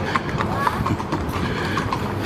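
A horse's hooves clip-clopping on pavement as it walks, over people talking.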